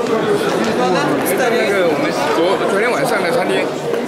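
Crowd chatter: many people talking at once as they walk together through a large hall, no single voice standing out.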